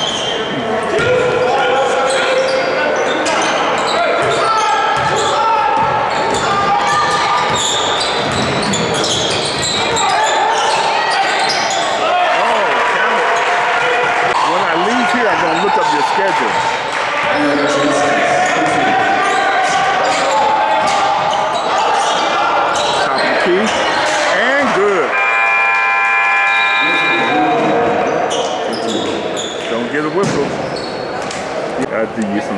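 Game sounds in a gym: a basketball dribbling and bouncing on the hardwood, with voices echoing in the hall. About 25 seconds in, the scoreboard horn sounds one steady tone for about two seconds.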